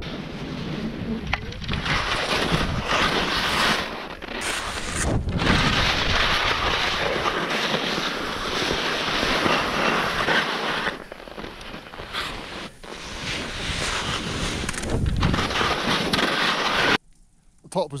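Skis scraping over hard, scraped icy snow on a steep descent, mixed with wind on the microphone. The noise swells and eases with the turns, dips briefly a few times, and cuts off abruptly near the end.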